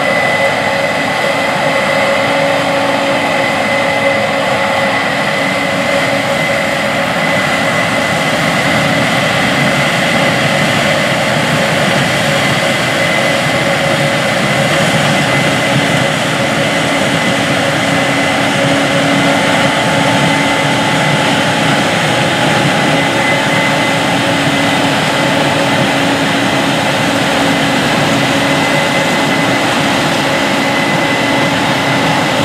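Case IH Axial-Flow combines harvesting corn: a steady drone of engine and threshing machinery with a thin, high whine held over it throughout.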